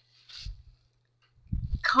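A short, faint rustle of plastic packing, bubble wrap and foam sheeting, being handled, then a woman's voice near the end.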